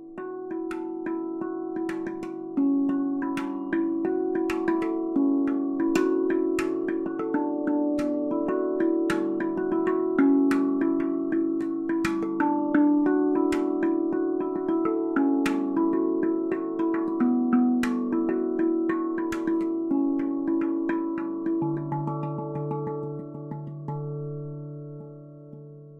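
Handpan music: quick runs of struck metal notes, each ringing on and overlapping the next, with a deeper note coming in near the end.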